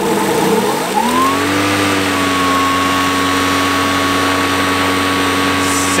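Kobalt 40-volt brushless cordless electric lawn mower starting: the motor and blade spin up with a rising whine over about the first second and a half, then run at a steady pitch with a hum and a rush of noise.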